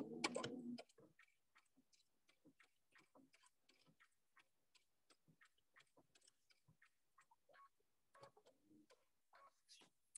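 Faint, quick ticking of a sewing machine stitching appliqué at a slow speed, several needle clicks a second.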